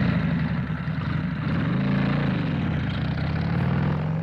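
Vehicle engine sound effect running steadily, with a brief rise and fall in pitch near the middle, as in a light rev.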